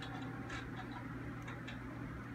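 A handful of short, sharp clicks and clacks from a cartoon videotape being pushed into a VCR, heard through a television's speaker over a steady low hum.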